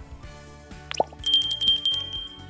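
Background music with a subscribe-button sound effect over it: a click and a quick rising plop about a second in, then a bright, fluttering notification-bell chime that rings on past the end.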